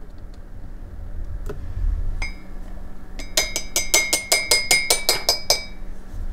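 A red plastic measuring spoon clinking against a ceramic coffee mug: one clink about two seconds in, then a quick run of clinks, about six a second, each with the same ringing tone.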